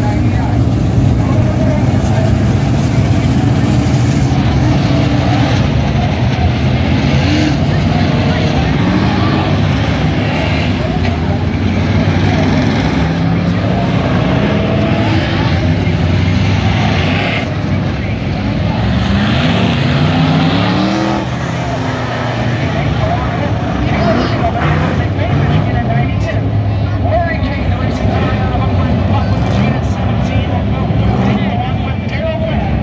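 Several dirt-track race cars running laps together, their engines rising and falling in pitch as they accelerate down the straights and lift for the turns.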